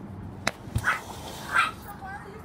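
A dog barking twice, two short barks under a second apart, after a sharp click about half a second in.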